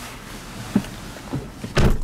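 Tesla Model S car door pulled shut from inside with a heavy thump near the end, after a couple of light knocks.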